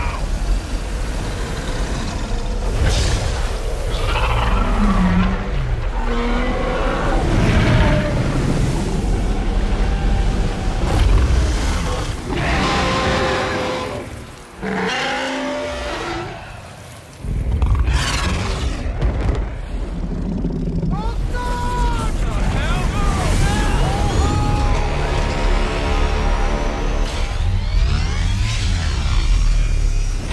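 A film action soundtrack: loud music over storm and heavy surf, deep booms, and long bending creature roars from a sea monster. The level drops briefly about fifteen seconds in.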